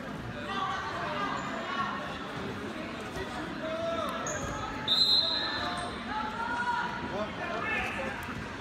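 Spectators' voices talking and calling out over one another in a gym, with a short high-pitched tone about five seconds in.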